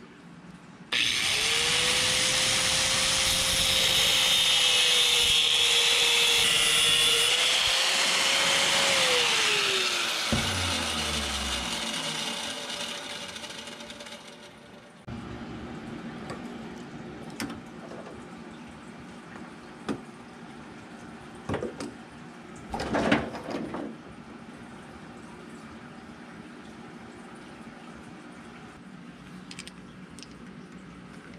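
Angle grinder running for about eight seconds as it trims the top fin off a cheap bar clamp, then switched off, its whine falling as it spins down. Afterwards a few light clicks and knocks of the clamp being handled.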